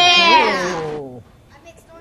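A child's long, high-pitched excited cry, rising and then falling in pitch over about a second, with a second, lower voice overlapping it.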